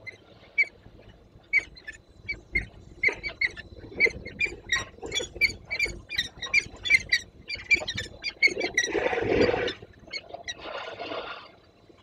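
Young peregrine falcons calling: a rapid run of short, sharp, harsh calls, about three to four a second. Near the end come two brief rushing bursts of wing flapping as one bird moves across the platform.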